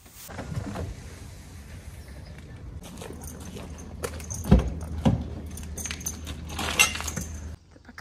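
Metal tack fittings jingling and clinking as a saddle and bridle are carried and loaded into a car boot, with a few sharper knocks about four and a half, five and almost seven seconds in. A steady low hum runs underneath and stops shortly before the end.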